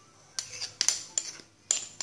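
Metal spoon clinking against a small glass jar while packing coffee-grounds scrub into it: about five sharp clinks with a brief ring, two near the middle and one near the end.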